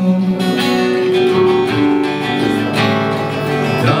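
Acoustic guitar strumming chords with an electric guitar playing along, an instrumental passage between sung lines.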